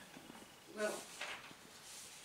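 A single short spoken word ("Well") a little under a second in, otherwise faint room tone.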